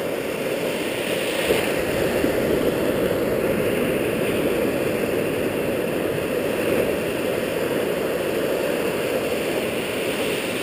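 Ocean surf washing and foaming in the shallows close around the microphone: a steady rushing noise with no distinct breaks.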